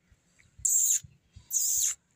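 A person making two short hissing 'psst' calls about a second apart to get a sleeping dog's attention.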